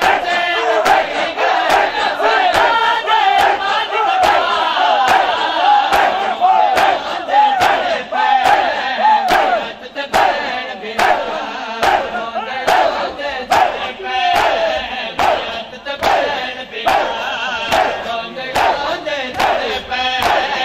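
A large crowd of male mourners performing matam: open hands slapping bare chests in unison, about two beats a second, while many voices chant the noha along with the beat.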